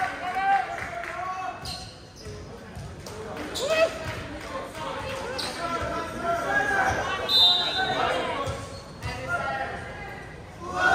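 Indoor volleyball rally: the ball is struck several times, sharp hits a second or two apart, echoing in the gym, while players and spectators shout and call out.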